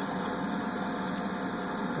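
Steady machine hum with an even hiss, the running noise of equipment in a workshop.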